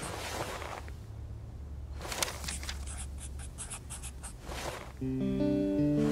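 Handwriting on paper: a scratchy stroke at the start, then a run of short scratching strokes. Near the end a short plucked-string music phrase comes in.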